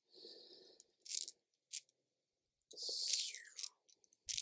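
Quiet handling of plastic dice in a felt-lined dice tray, a few brief soft clicks and rustles as they are picked out, with a short breathy whisper-like sound about three seconds in.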